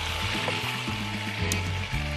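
Background music over a steady sizzle of hot oil frying in a pan.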